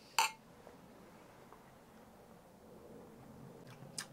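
Two stemmed glasses of beer clinked together once in a toast, a short bright chink just after the start, then a few seconds of quiet room tone.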